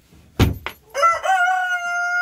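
A sharp knock about half a second in, then a rooster crowing: one long, drawn-out call that starts about a second in and is the loudest sound.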